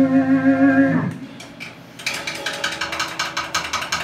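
A sustained electric guitar note rings with a slight waver and is cut off about a second in. About two seconds in, a fast, regular run of clicks begins and continues.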